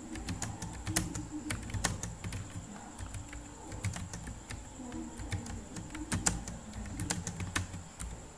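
Typing on a computer keyboard: irregular key clicks, several a second, as a sentence is typed out. A faint steady high-pitched whine runs underneath.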